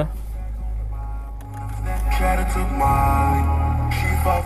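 Music playing from the car radio through the Fiat Egea's factory Uconnect audio system, growing louder about two seconds in. The sound system is not very high quality.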